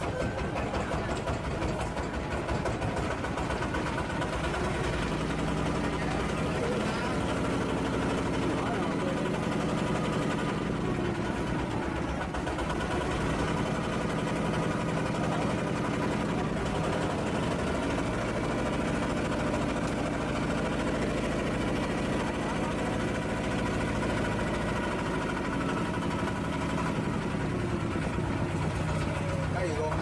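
Engine of a small river car ferry running steadily as the ferry moves off from the landing and crosses the river.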